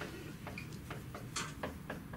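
Marker pen writing on a whiteboard: a quick run of short strokes and taps as letters are formed, with one louder stroke about one and a half seconds in.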